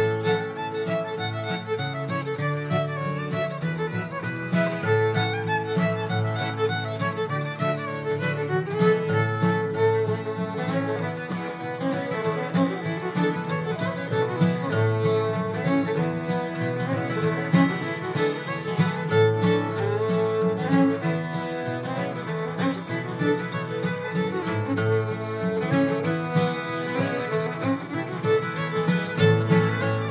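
Old-time fiddle tune played on a violin, a continuous run of quick bowed notes.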